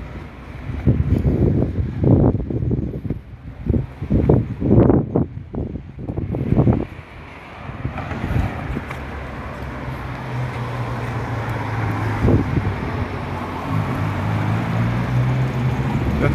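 Wind buffeting the microphone in irregular gusts for the first several seconds, then a car's engine and tyres humming steadily and growing gradually louder as it comes along the road.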